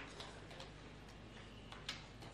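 Faint, irregular clicks and ticks over a low steady hum, the sharpest one near the end.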